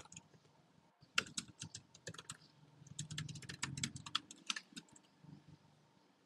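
Typing on a computer keyboard, faint. A run of key clicks starts about a second in, comes fastest around the middle, and stops about a second before the end.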